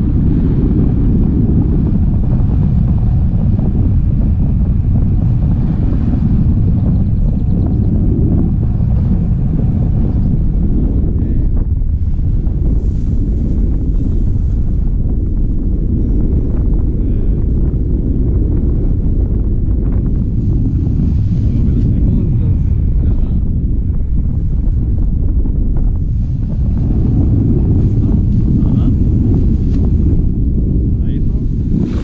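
Airflow from a tandem paraglider in flight buffeting an action camera's microphone: a loud, steady, low rumble of wind noise.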